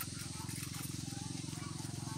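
A steady low drone of several held tones with a fast, even buzzing pulse.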